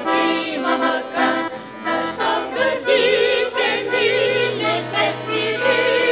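Women's vocal group singing a Bulgarian old urban song in harmony, several voices moving together with vibrato on held notes, over instrumental accompaniment with a steady low note in the second half.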